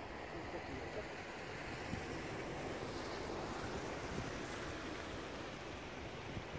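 Steady rushing noise of a large murmuration of common starlings swirling overhead, swelling slightly in the middle.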